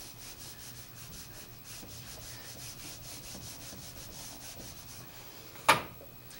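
Whiteboard eraser wiped quickly back and forth across a whiteboard, a steady rubbing hiss of about five strokes a second, ending with a sharp click near the end.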